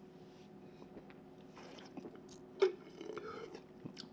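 Faint mouth sounds of tasting sparkling wine, the wine worked around the mouth, with a single sharp click about two and a half seconds in.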